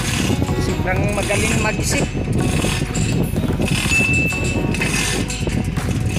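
Voices mixed with music, dense and continuous, with a voice-like pitched stretch about a second in and a brief steady high tone around four seconds.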